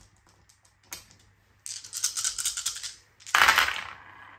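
A handful of about ten plastic six-sided dice shaken in the hand, a rattling that lasts about a second, then thrown into a wooden dice tray, where they clatter loudly and settle near the end.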